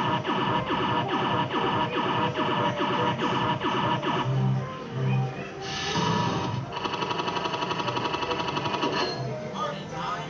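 A fruit machine plays its electronic win jingle, a bright phrase repeating about twice a second. About four seconds in it changes to two low tones, then a fast run of beeps as the win is counted up.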